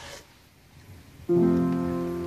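A short near-quiet pause, then a piano chord struck about a second and a quarter in, held and slowly fading.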